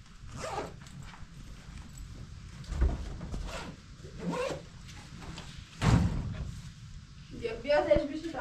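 A few dull thumps and knocks of household things being handled on a carpeted floor, the loudest about six seconds in, as a plastic washbasin is set down.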